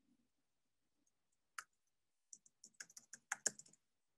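Faint typing on a computer keyboard: a single keystroke about a second and a half in, then a quick run of about ten keystrokes near the end.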